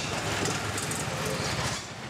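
A motorized turret cart running close by, a steady low engine rumble over the general noise of a busy fish-market floor.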